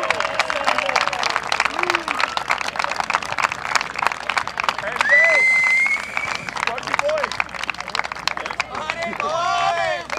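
A small group of people clapping steadily, with scattered shouts and one rising whistle about five seconds in.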